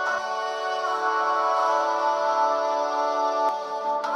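A held 'ah' backing vocal from a song's chorus, played back through ControlHub's Atmosphere reverb: a sustained, lush, spacey wash of layered tones whose character shifts as reverb types are switched. One faint click about three and a half seconds in.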